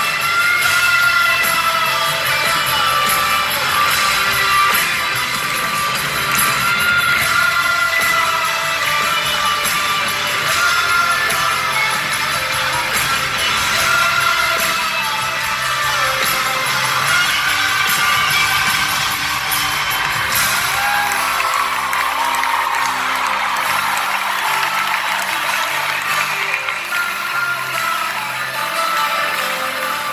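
Live pop-rock band playing in a large arena, heard from the audience, with voices singing and the crowd cheering. In the last third the bass drops away, leaving a lighter accompaniment.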